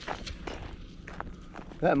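Footsteps of a person walking on grass and wood mulch, a loose run of uneven soft steps and crunches.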